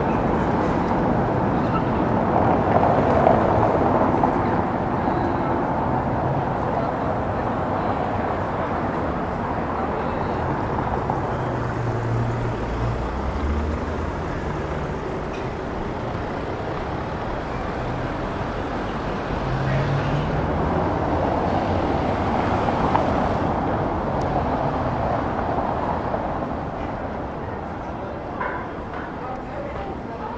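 Busy old-town street ambience: a steady mix of passers-by talking and traffic going by, with a vehicle's low engine sound passing through about halfway in.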